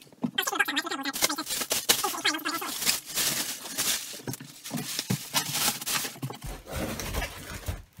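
Bubble wrap and plastic packaging crinkling and rustling as it is pulled off a guitar case and crumpled up, with handling knocks and a few low thumps near the end.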